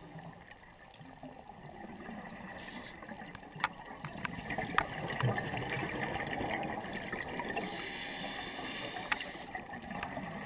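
Underwater sound heard through a camera housing: the gurgling rush of a scuba diver's exhaled bubbles, swelling in the middle, with a few sharp clicks.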